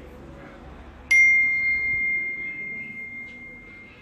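A struck object ringing: one sharp hit about a second in, then a single clear high ring that fades away over about three seconds.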